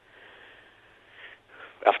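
A faint, breathy exhale heard through a telephone line, hissy and without pitch, lasting about a second and a half before speech begins near the end.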